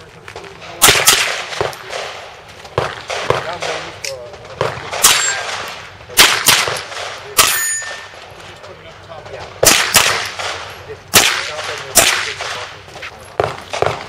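A rifle fired in a string of shots, about fifteen in all, spaced irregularly with pauses between groups, as the shooter engages steel targets; some hits leave a clanging, ringing steel note, clearest around the middle.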